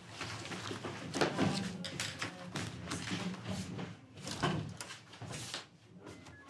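Papers and cardboard folders being handled around a meeting table, with a run of knocks and clatters from chairs and furniture as several people gather their files and get up.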